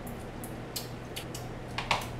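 Light clicks and taps of a spoon against a bowl and utensils on a table, about six in all, with a louder pair of knocks near the end.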